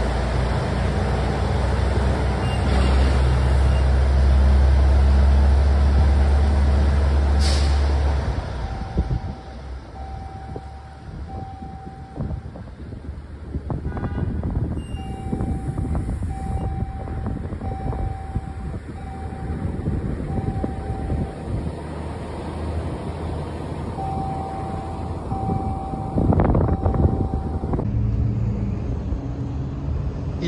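A semi truck's diesel engine rumbles loudly in an echoing tunnel for about eight seconds. After a brief high hiss, the level drops to lighter vehicle and traffic noise. Over this, an electronic beeper sounds about once a second in runs of several beeps.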